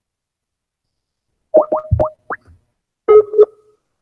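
Outgoing-call sounds from a computer calling app: a quick run of four rising blips about a second and a half in, then a two-note ringing chime as the call rings the other party.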